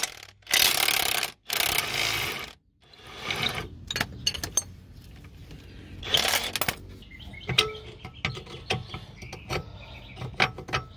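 Socket-wrench work on 21 mm front lower control arm bolts: a few loud bursts of noise in the first three seconds, then scattered ratchet clicks and metal clinks.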